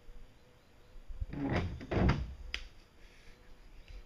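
A cluster of dull knocks and scraping, loudest about two seconds in, followed by one sharp click: a person bumping and moving against a boat's hull frame.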